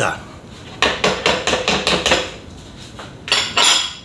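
Dishes being handled on a kitchen counter: a small glass bowl and a mixing bowl knocking and clinking, with a run of light knocks in the first half and a louder clatter near the end.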